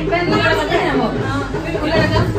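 Several voices talking over one another: indistinct chatter, with no single clear speaker.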